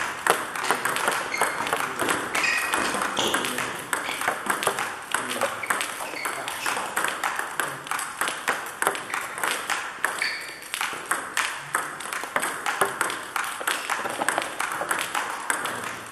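Table tennis rally: the plastic ball clicking off rubber-faced bats and bouncing on the table, a fast run of sharp clicks with hardly a break.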